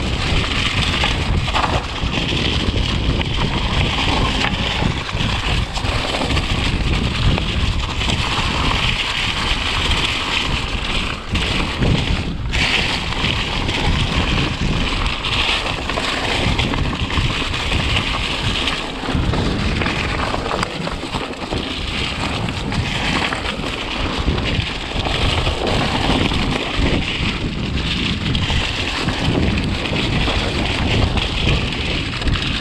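Mountain bike descending a dry leaf-covered dirt trail at speed: steady wind rush on the action camera's microphone, mixed with the rolling noise of the tyres over leaves and dirt and short jolts from bumps in the trail.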